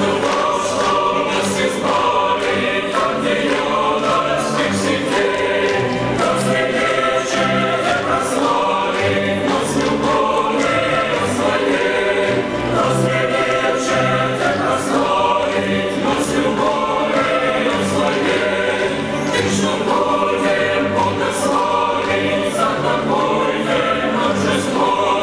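A large mixed choir of children and adults singing a Christmas carol (koliadka) in unison and harmony, over a steady beat in the accompaniment.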